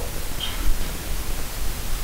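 Steady hiss of room tone and recording noise, with a low rumble beneath it, in a pause between spoken sentences.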